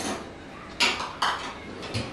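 Spice jars clinking and knocking against each other as one is taken out of a low kitchen cabinet: a few short clinks, the two sharpest about a second in.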